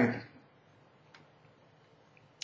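The end of a man saying "all right", then near silence: room tone with one faint click about a second in.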